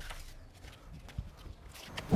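A few faint, soft taps, with one low thump a little past halfway.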